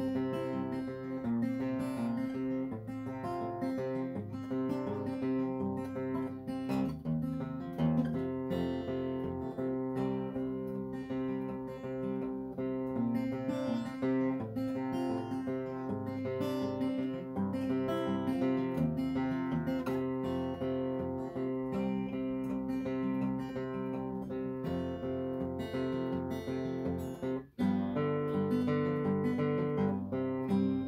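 Steel-string acoustic guitar, tuned down a half step with the low string dropped to C, playing chords in D shapes that sound in C at a slow tempo of about 82 beats per minute. The sound cuts out for a moment near the end.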